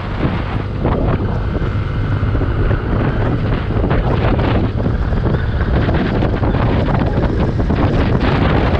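Wind noise on the camera's microphone from riding a motorcycle at road speed, a steady low rumble with the motorcycle's running engine mixed in.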